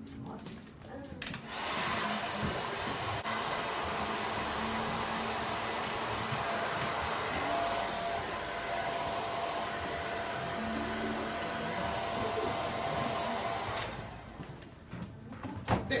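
Hand-held hair dryer switched on about a second and a half in, blowing steadily with a faint thin whine, then switched off near the end. It is drying a woman's digitally permed hair.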